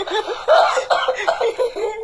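A person laughing: a run of short, quick voiced bursts of laughter.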